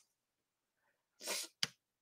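A woman's short breath, about a third of a second long, followed by a brief mouth click, after more than a second of silence.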